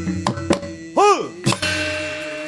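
Wayang kulit sabetan accompaniment: a rapid run of sharp wooden knocks and metallic clacks from the dalang's cempala and keprak on the puppet box, over gamelan and kendang drum. About a second in comes a loud, short tone that rises and falls in pitch, and near the end a struck gamelan note rings on.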